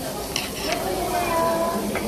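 Pork belly sizzling on a grill, a steady hiss, with two short clicks about half a second in.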